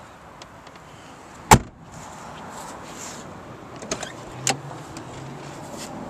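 A door of a 1997 Mercury Grand Marquis shutting with one loud thump about a second and a half in. A few lighter clicks follow, then a brief low hum near the end.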